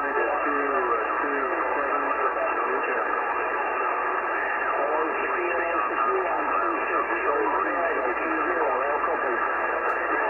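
Many voices talking over one another from a CB radio in lower sideband: a skip pileup of distant European stations all calling at once. The sound is narrow and tinny, with no single voice clear.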